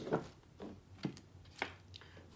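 Tarot deck being cut and handled by hand: four soft card clicks and taps, about half a second apart.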